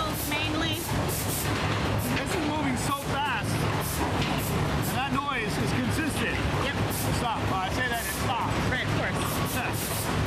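Optical sorter's air jets firing short, sharp hissing bursts at irregular intervals over the steady hum of conveyor machinery, each burst knocking a clear plastic container out of the stream. Background music plays along with it.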